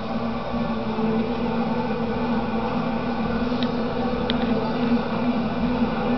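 A televised football game playing through a small CRT television's speaker, heard in the room under a steady buzzing hum.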